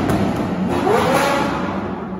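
Supercar engine revving hard as the car pulls away through a railway underpass, the revs climbing sharply just under a second in and then holding, over the hiss of tyres on the wet road.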